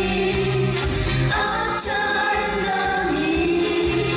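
Live performance of a Korean pop song: band accompaniment with sustained sung vocal harmonies.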